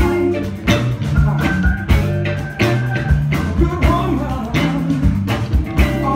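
Live blues band playing loud: electric guitar over bass lines and a steady drumbeat.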